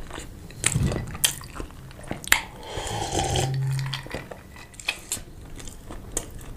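Close-miked chewing and biting of sausage, with sharp mouth clicks and smacks throughout and a brief low hum about halfway.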